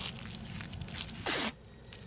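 Adhesive tape ripped off its roll in one quick pull of about a quarter second, a little over a second in, over faint rustling of wrap and paper being handled.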